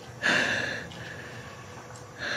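Guqin strings plucked roughly: a sudden twanging note about a quarter second in that fades over about half a second into a fainter ring.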